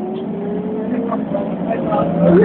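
Irisbus Citelis CNG city bus with an Iveco Cursor 8 CNG engine, heard from inside the cabin, picking up speed: a steady low engine note under a whine that rises slowly in pitch, growing louder.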